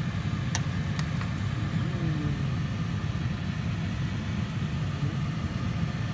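A steady low hum, with a few light clicks about half a second and a second in.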